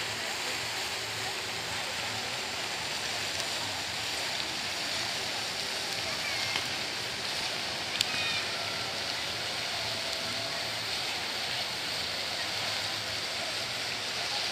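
Steady splashing hiss of a fountain jet falling back into its basin, with faint voices of people around it. A single sharp click about eight seconds in.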